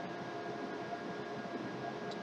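Faint steady background hiss with a light constant hum, no distinct events: room tone.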